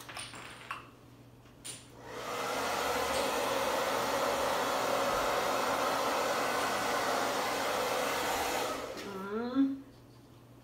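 Hand-held hair dryer blowing a steady stream of air across wet acrylic pouring paint on a canvas to spread it. It starts about two seconds in and stops about a second before the end.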